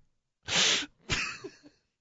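A man laughing helplessly without words: two loud, breathy bursts of exhaled laughter, the second starting about half a second after the first ends.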